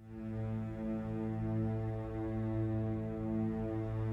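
Opening of a music track: a single low droning note with many overtones fades in from silence and is held steady, without melody or beat.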